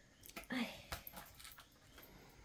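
Cardboard advent-calendar box being handled and pried open: faint rustling with one sharp click just under a second in, and a short "ay" from the woman opening it.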